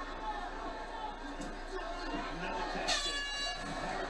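Fight broadcast playing quietly through a TV: faint commentary and crowd, with a brief horn about three seconds in marking the end of the round.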